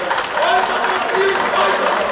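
Indistinct shouting and voices echoing around a sports hall, with scattered sharp clicks and knocks.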